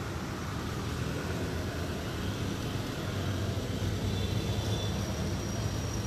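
A steady low rumble with a hiss over it, with no distinct events.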